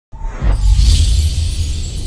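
Cinematic logo-intro sound effect: a deep bass boom that starts suddenly and carries on, with a bright hissing whoosh sweeping over it about half a second in.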